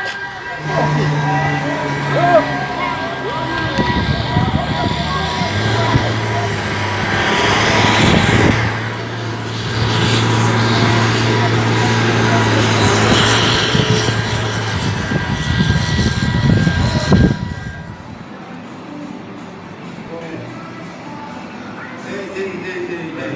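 Engines running with a steady drone: a low hum under several thin, steady high whining tones, with voices in the background. The loud din stops abruptly about seventeen seconds in, leaving quieter noise.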